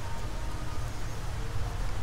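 Wildflower seed mixed with sand sprinkled by hand onto loose soil, a faint rustle under a steady outdoor hiss and low rumble.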